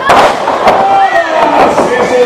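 A wrestler's flying leap crashing down in the ring: one loud slam at the very start and a smaller knock a little under a second later, with crowd voices shouting throughout.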